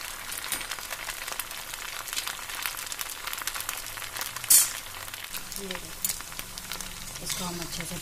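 Suji (semolina) cutlets deep-frying in very hot oil in a kadhai: a steady crackling sizzle, with one brief, louder hiss about halfway through.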